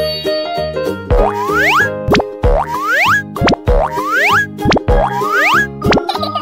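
Bouncy children's background music overlaid with a string of cartoon 'boing' sound effects. From about a second in, quick rising pitch sweeps come about two a second.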